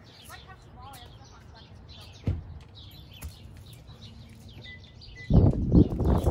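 Songbirds chirping outdoors, with a sharp tap about two seconds in and a lighter one a second later. A loud rush of noise comes in near the end.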